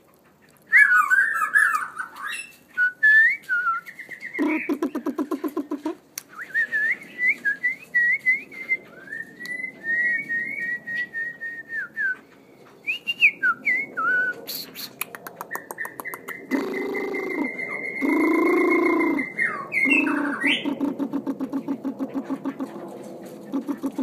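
Caged magpie and black-throated laughingthrush whistling and calling: varied clear whistled phrases and gliding notes, with rapid rattling trills. Lower, longer calls come in the second half.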